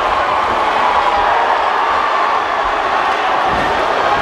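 Crowd cheering and shouting steadily, a continuous dense wash of many voices.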